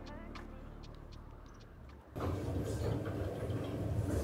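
A quiet stretch with a few faint ticks, then about halfway through a steady low rumble sets in suddenly: the washing machines and dryers running in a self-service laundromat.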